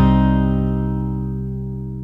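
The song's final chord held and slowly fading away, with the higher notes dying out first.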